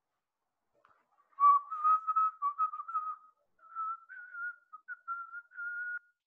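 A person whistling a short, wandering tune, beginning about a second and a half in. It is one clear tone broken into short notes that waver and drift slightly higher in pitch toward the end.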